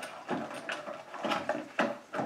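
Makeup palettes and cases being handled and set down on a table: several light clicks and knocks at irregular intervals.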